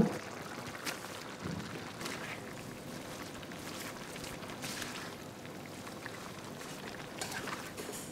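Wok of simmering coconut-milk sauce with water spinach (kangkong) being stirred in: a steady bubbling hiss, with a few brief scrapes and rustles from the spatula turning the leaves.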